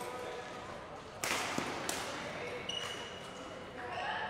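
Badminton rally in a large sports hall: rackets striking the shuttlecock, the loudest a sharp smack a little over a second in that rings briefly in the hall, with background voices from the courts.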